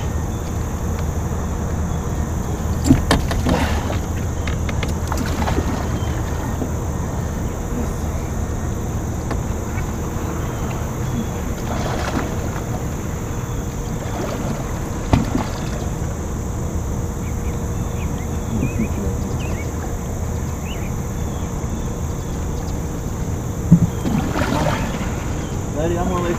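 Water moving against the side of an aluminium fishing boat while a large catfish is held in the water for release, over a steady low rumble, with a few sharp knocks on the boat.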